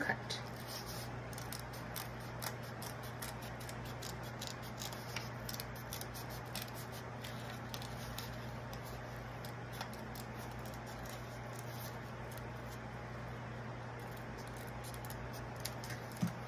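Scissors cutting through layered construction paper: a steady run of small, irregular snips and paper crackles as the blades work along a curved outline, over a constant low hum.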